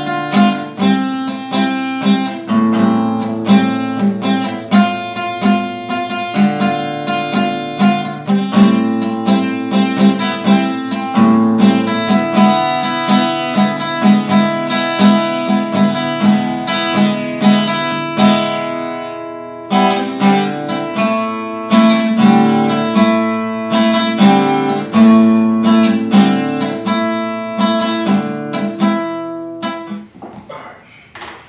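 Acoustic guitar playing a riff of picked notes and strummed chords, repeated over changing chords, with a brief pause about two-thirds of the way through.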